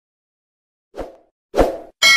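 Two short pop sound effects, about a second in and again just over half a second later, like those that go with subscribe-button icons popping up in an end-screen animation.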